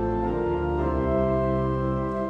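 Organ playing slow, sustained chords, moving to a new chord about a second in.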